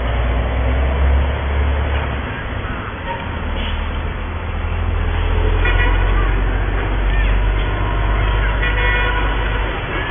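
Street traffic noise with a steady low rumble, and two short vehicle horn toots in the second half.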